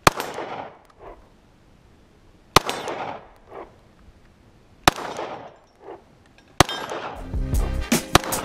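Four single 9 mm pistol shots about two seconds apart, each followed about a second later by a fainter second report. Near the end, music with a beat comes in under a faster string of shots.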